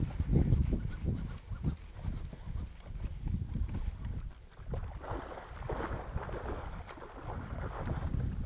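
Wind buffeting the microphone in an open fishing boat, an uneven low rumble, with water splashing and washing around the boat that grows rougher about halfway through.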